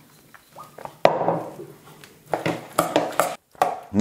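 A metal spoon clinking and scraping against a stainless steel bowl while chopped beetroot and onion are stirred. There is a sharp knock about a second in, then irregular clinks.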